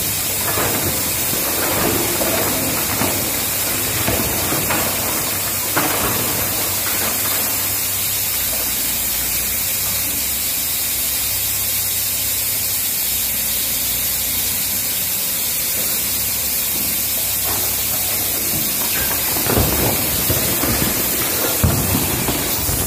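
Iron ore sliding out of a tipping haul truck's dump body into a crusher hopper, with rocks knocking and thudding in the first few seconds and again near the end. Under it runs the low rumble of the truck's engine, and over everything a steady hiss of water dust-suppression sprays.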